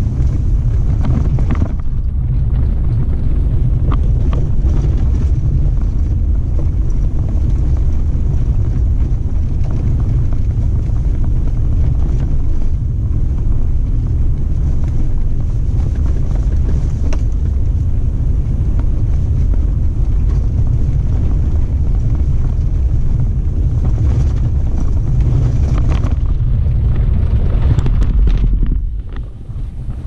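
Steady low rumble of a vehicle driving along a sandy dirt track, with a few light knocks from the rough ground. The rumble drops away sharply near the end as the vehicle slows.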